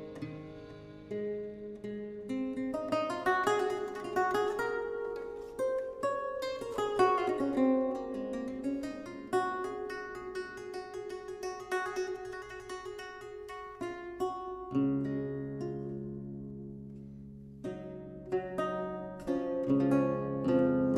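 A 13-course Baroque lute played solo: single plucked notes and chords that ring on, with deep bass courses sounding under the melody from about fifteen seconds in.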